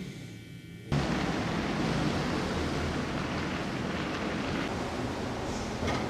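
Faint room tone, then about a second in a steady outdoor background noise starts abruptly: an even rushing hiss over a low rumble, like street ambience.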